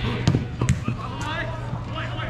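A football being kicked on grass: a few sharp thuds in quick succession, the sharpest about two-thirds of a second in, amid players shouting.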